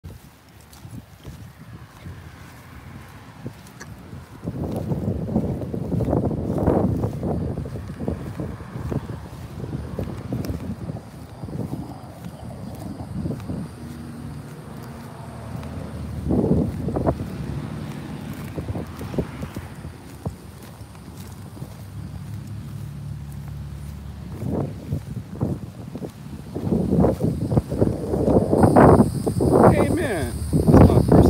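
Wind buffeting a phone's microphone outdoors: low rumbling noise that comes and goes in uneven gusts, louder toward the end.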